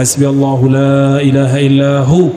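A man's voice chanting a Quranic verse in Arabic recitation style, drawing it out in one long, nearly level held note.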